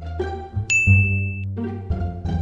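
A single bright ding sound effect: a high, clear bell-like tone that starts sharply about two-thirds of a second in and rings for under a second. It plays over background music with a steady bass line.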